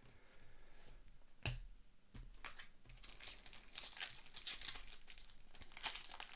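A foil trading-card pack wrapper being torn open and crinkled in the hands, faint, with dense quick crackles that build through the second half. One sharp tap comes about a second and a half in.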